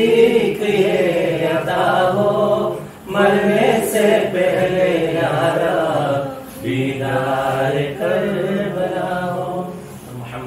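Urdu devotional verses in praise of Abbas, chanted without instruments in three long drawn-out phrases, with brief breaths about three and six and a half seconds in.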